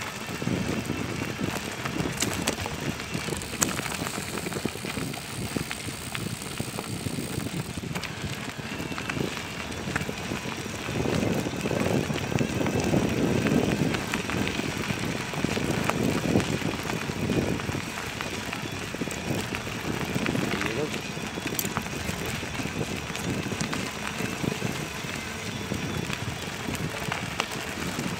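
Tyres rolling and rattling over a loose dirt-and-gravel track, with wind rushing over a handlebar-mounted microphone; louder for a stretch around the middle.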